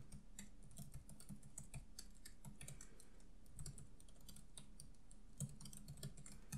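Faint typing on a computer keyboard: an irregular run of key clicks.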